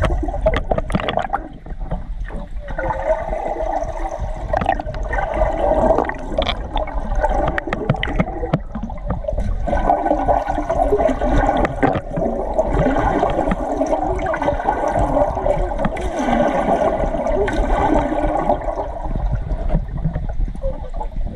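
Water gurgling and rushing, muffled as heard from underwater beside a stand-up paddleboard, with scattered small clicks and bubble pops.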